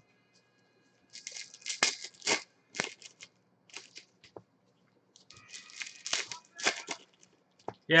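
Foil wrappers of trading-card packs crinkling and tearing as packs are handled and ripped open, in two spells of crackly rustling: about a second in and again past the five-second mark.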